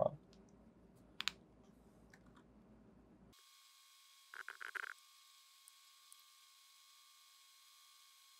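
Mostly near silence with faint room tone, broken by a single sharp computer mouse click about a second in and a short cluster of about four quick soft clicks a little after the middle.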